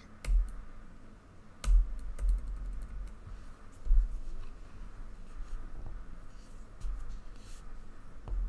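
Typing on a computer keyboard: scattered key clicks, with a quick run of them about two seconds in, and a few dull low thumps, the loudest near two and four seconds in.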